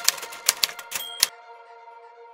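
Typewriter sound effect: about ten quick key clicks over a second and a bit, with a short high ping near the last of them, then a faint held tone.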